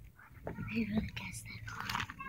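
Quiet, whispered speech, with short rustles of plastic card-binder sleeves as the pages are handled.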